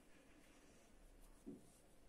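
Near silence: faint rustling of cotton yarn being drawn by hand through the stitches of a crocheted pot holder, with one short soft low sound about one and a half seconds in.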